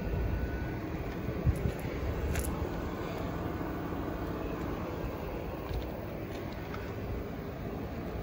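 Steady outdoor background rumble and hiss, with a couple of faint clicks.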